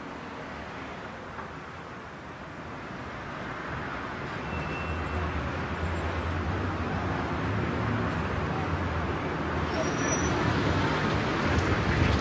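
City street traffic noise, steady and gradually growing louder, with a low engine rumble joining in a few seconds in.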